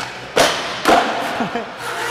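Skateboard on a steel handrail down a stair set, with two loud impacts about half a second apart as the board comes off the rail and lands on concrete. The landing is judged sketchy.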